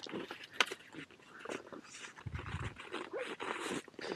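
Faint clicks and scrapes of cross-country skis and poles on packed snow, with a brief low rumble about two and a half seconds in.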